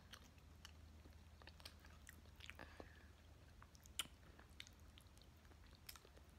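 Faint close-up chewing and small wet mouth clicks of someone eating soft grits. One sharper click comes about four seconds in.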